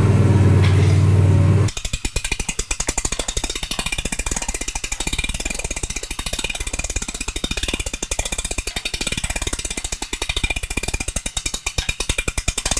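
A mower engine runs steadily for under two seconds, then cuts to the MoJack Pro lift's hand-crank winch ratcheting, a rapid, even stream of clicks as the front of the zero-turn mower is cranked up off the ground.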